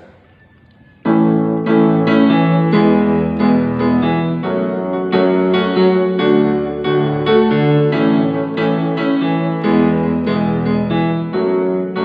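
Yamaha digital keyboard played in a piano voice. Both hands play chords for a song intro in the key of A, each chord held for three beats, starting about a second in.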